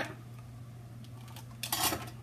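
A low steady hum, with a short rustle of small plastic items being handled near the end.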